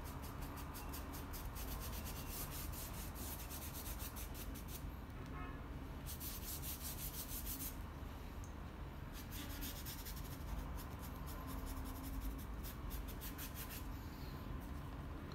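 Paintbrush loaded with acrylic paint stroking back and forth across sketchbook paper: a faint, quick, repeated scratchy rubbing. The strokes break off for a moment about a third of the way through, then resume.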